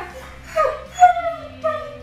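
Alaskan Malamute vocalizing in three short pitched calls, the loudest about a second in.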